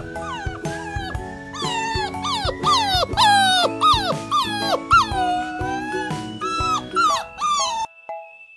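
Beagle puppy howling in a string of short cries that fall in pitch, about two a second. They grow louder after the first second, with one longer drawn-out howl about five seconds in. Background music plays throughout.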